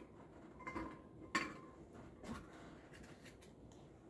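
Plastic eggs clicking and rattling against each other and a glass bowl as a hand reaches in and picks one out: a few faint clicks, the sharpest about a second and a half in.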